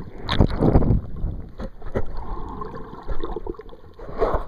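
Underwater water noise picked up by a camera in its housing: muffled sloshing and gurgling as the camera moves through the water, with a louder surge about half a second in and a few scattered clicks.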